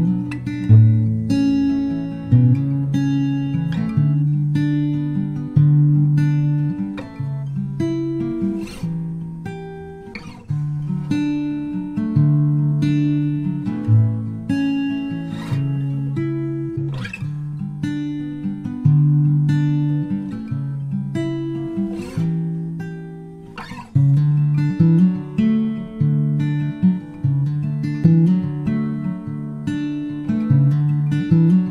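Acoustic guitar playing a calm, slow folk instrumental: plucked notes and chords over a steady bass line, with phrases that fade out and start again twice.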